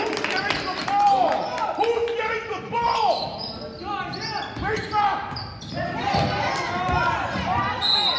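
Basketball game in a large echoing gym: a basketball dribbled on the hardwood court and sneakers squeaking on the floor, with voices calling out across the hall.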